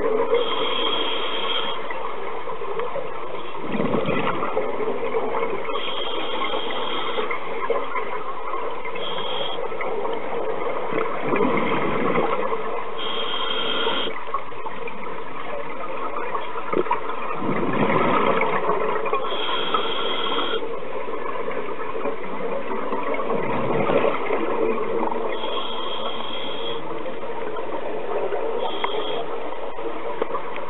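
Scuba regulator breathing heard underwater: a steady rush, with exhaled bubbles surging out about every six seconds and a short high whistle from the regulator between breaths.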